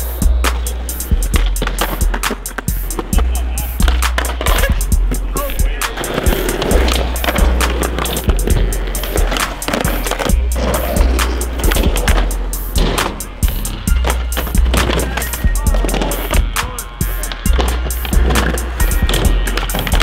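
A hip-hop beat with a deep, heavy bass line, over skateboards rolling on concrete with repeated sharp knocks of boards popping and landing during flip tricks.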